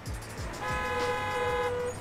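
A vehicle horn honks once, a single held note lasting a little over a second, in city street traffic.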